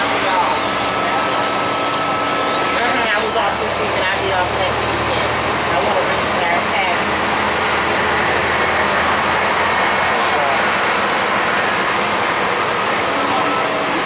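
Interior noise of a 2005 Gillig Phantom transit bus under way: its Cummins ISL diesel engine running with steady road noise, with voices talking in the background.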